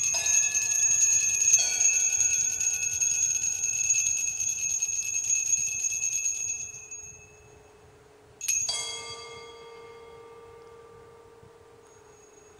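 Altar bells shaken in a rapid, continuous ring for about seven seconds, then fading, marking the elevation of the consecrated host. About eight and a half seconds in comes a single strike that rings away slowly.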